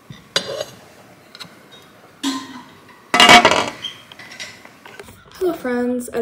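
A few scrapes and knocks from a spatula and stainless steel pot of strawberry jam being stirred on the stove. The loudest comes about three seconds in, and a woman starts speaking near the end.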